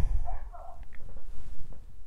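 A faint, short sound from somewhere off in the house about half a second in, taken for a cat setting off a talking toy. A low rumble near the start.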